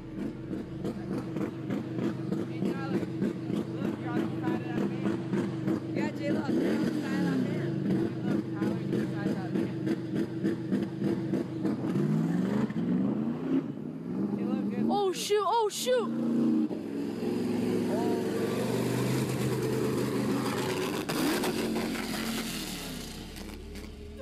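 A speedboat's engine running at the boat ramp, its pitch rising and falling several times as it is revved, with a brief shout from a person about halfway through.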